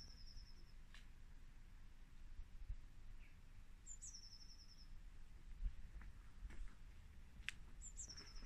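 A small bird calling faintly, three times about four seconds apart: each call a high note that drops into a short rapid trill. A faint low background noise runs under it.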